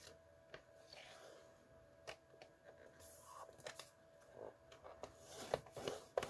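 Quiet handling of cardstock on a paper trimmer, with faint clicks and light scrapes as the sheet is squared against the rail. Near the end the trimmer's scoring head is slid along its track, making short scraping runs as the fold line is scored.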